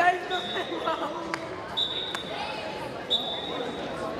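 Voices echoing in a large gym hall, with three short high-pitched squeaks about a second and a half apart and two sharp knocks in the middle.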